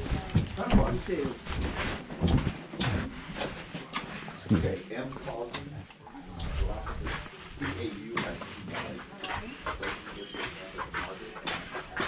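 Door hinges squeaking in short squeals, among scattered knocks and clicks of handling and footsteps.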